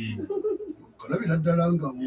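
A person's voice in a small studio room: low wavering sounds, then one note held for most of a second in the second half.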